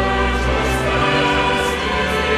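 Choral music: a choir singing long held chords, the lower notes shifting about a second in.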